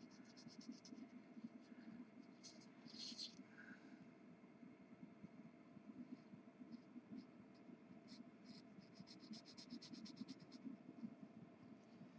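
Faint scratching of a black felt-tip marker coloring on a sheet of printable fabric, in runs of quick back-and-forth strokes.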